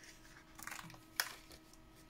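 Page of a paper craft pad being turned by hand: a short paper rustle, then a sharp flap about a second in as the sheet lands flat.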